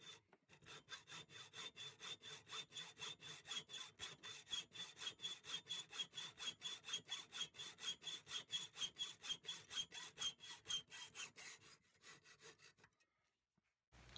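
Hand hacksaw with a 24-teeth-per-inch blade cutting through steel threaded rod held in a vise, the blade wetted with cutting fluid. The strokes are faint and even at about four a second, growing a little louder through the cut, and stop near the end as the cut-off piece is nearly through.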